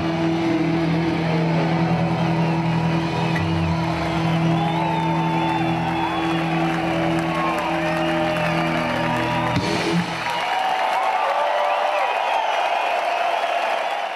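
Live rock band holding a long final chord, which ends with a last hit about ten seconds in. The crowd is whistling and cheering over the chord and keeps cheering after the band stops.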